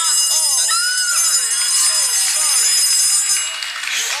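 A game-show time-up bell ringing steadily for about three and a half seconds, then cutting off: the bonus round's 60-second clock has run out. Excited cries rise and fall under it.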